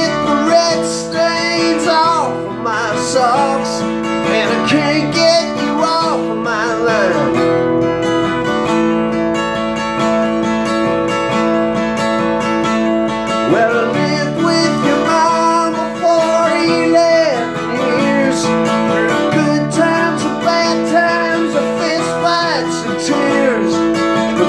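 Acoustic guitar strummed in a steady rhythm through an instrumental stretch of a country-rock song, with a singing voice coming in briefly a few times.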